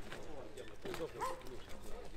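Indistinct voices with faint scattered knocks.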